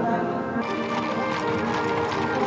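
Band music playing steadily, with horses' hooves clattering on stone paving from about half a second in.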